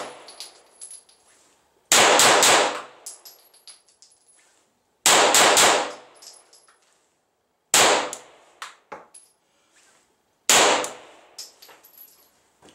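Glock 9mm pistol fired in four quick bursts of two or three shots each, about two and a half to three seconds apart, each burst echoing off the range roof. After each burst there is a faint high ringing.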